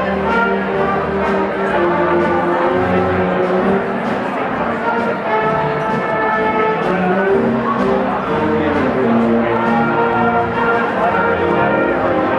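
A live jazz big band playing, its brass section holding sustained chords over a steady beat, with a cymbal struck about twice a second.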